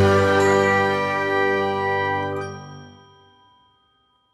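Tail of a short logo jingle: a bright ringing chord held and fading out about three and a half seconds in.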